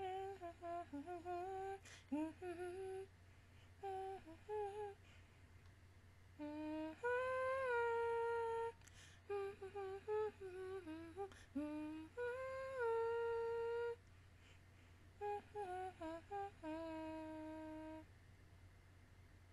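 A woman humming a tune with her mouth closed, in short melodic phrases separated by pauses, some notes held for a second or more.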